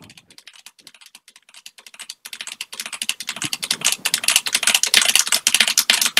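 Rapid keystrokes clicking on a computer keyboard as lines of code are pasted over and over. The keystrokes start faint and sparse, then from about two seconds in become a dense, fast run of clicks that grows louder.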